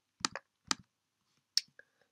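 Computer mouse clicking: four or five short, sharp clicks spaced unevenly over about two seconds.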